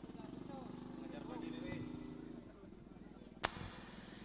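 Faint voices in the background over a steady low hum from the sound system, then a sharp pop about three and a half seconds in, followed by hiss as a microphone channel opens.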